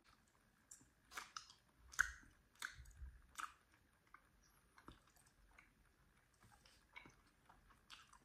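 A person chewing a grape-flavoured gummy candy: moist, clicking, squishy chews that are clearest in the first few seconds and then fade to faint, sparse mouth sounds. The gummy is a bit hard to bite.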